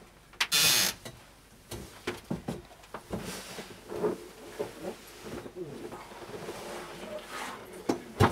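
Quiet room sound picked up by a lectern microphone: a short burst of noise about half a second in, then scattered faint clicks and knocks.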